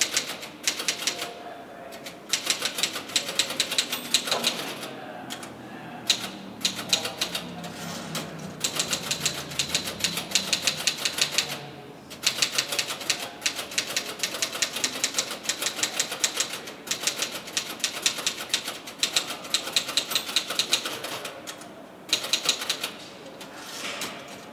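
Fast typing on a keyboard: rapid runs of key clicks lasting several seconds, broken by brief pauses.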